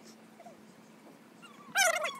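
An animal's high, wavering whining call near the end, loud against otherwise quiet surroundings.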